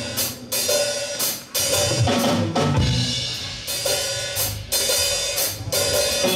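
Live blues-rock band playing an instrumental passage before the vocal comes in: drum kit with cymbal hits, electric bass and electric guitars.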